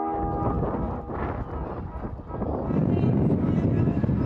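Strong wind buffeting the microphone, a rough, uneven rumble that grows louder about halfway through.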